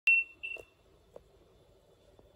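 Two short electronic beeps at the same high pitch, the first loud and the second softer about half a second later, followed by a faint click.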